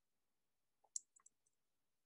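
A single sharp click about a second in, followed by a few faint ticks, the click that advances the presentation slide; otherwise near silence.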